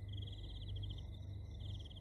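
Crickets trilling in fast pulsing runs over a low steady hum, a short ambience sound effect that starts and cuts off abruptly.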